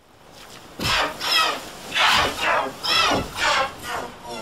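A run of about six short, high-pitched voice-like yells or squeals, starting about a second in and coming roughly every half second.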